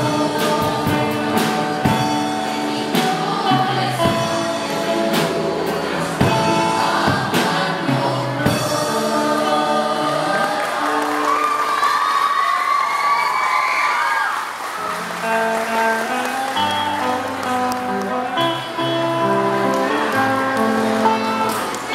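Mixed choir of men's and women's voices singing a song in harmony, holding long chords that change every second or two.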